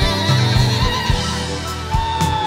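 Live band performance: a woman sings a high, wavering wordless line over bass and regular drum hits.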